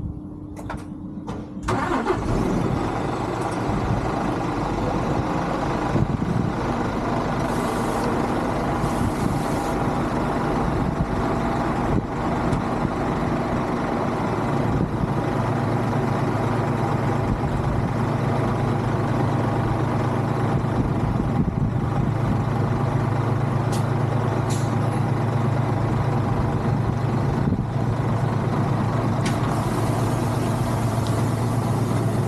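Articulated lorry's diesel engine starting after a few clicks about two seconds in, then idling steadily; a deeper steady drone joins about halfway through.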